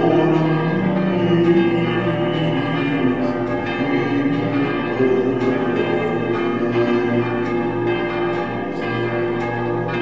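Church bells pealing: many overlapping strokes whose tones ring on into one another.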